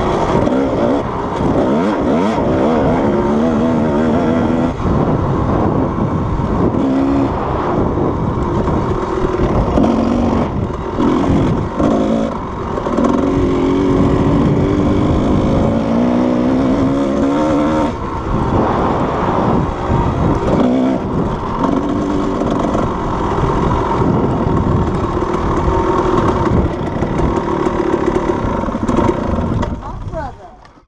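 Kawasaki KDX220 two-stroke single-cylinder dirt bike engine running under way, its pitch rising and falling with the throttle.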